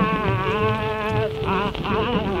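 Nepali devotional song: a singer holds a long vowel, then wavers through ornamented notes about one and a half seconds in, over a low drum pulse.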